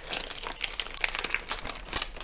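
Clear plastic film wrapped around a pen box crinkling and crackling irregularly as hands handle it to unwrap the sealed box.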